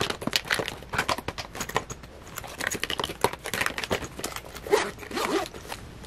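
Plastic makeup bottles and compacts clicking and knocking against each other as they are rearranged inside a HOYOFO makeup train case, then the case's metal zipper pulled shut.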